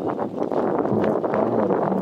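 Steady wind noise buffeting the microphone.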